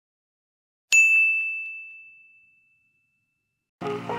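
A single bright, bell-like ding about a second in, ringing on one high note and fading away over about a second and a half. Music starts just before the end.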